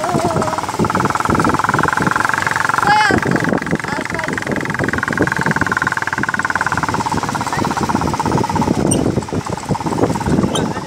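A motorcycle engine running under way on a rough dirt track, with a steady whine from about a second in that fades near the end, over rumbling and buffeting from the bumpy ride and wind on the microphone.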